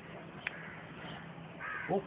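A lull with a steady low hum, broken by one brief, sharp bird call about half a second in. The speaker's voice starts again at the very end.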